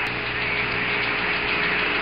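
Steady radio hiss with a faint hum and a thin held tone: the background noise of the Apollo 14 lunar-surface radio transmission, heard between voice calls.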